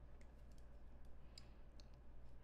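Near silence: a few faint clicks of a stylus on a writing tablet over a low steady hum.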